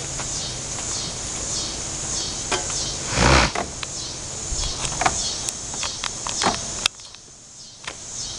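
Knocks, scuffs and clicks of someone climbing over a wooden playground structure, with one loud thump about three seconds in. It goes quieter for the last second.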